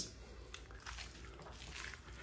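Faint wet squishing of a raw beef strip loin as hands grip and lift it off a wooden cutting board.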